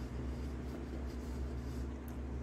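A man chewing a mouthful of chicken sandwich with his mouth closed, faint soft mouth sounds over a steady low hum.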